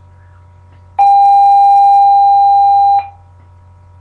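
Electronic school bell tone: one loud, steady beep about two seconds long, starting a second in and cutting off sharply.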